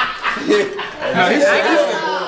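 Several people's voices talking and calling out over one another at a loud level, with a brief lull about a second in.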